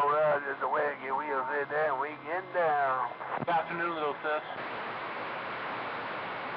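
An incoming station's voice over a CB radio receiver, ending about four and a half seconds in and leaving steady static hiss.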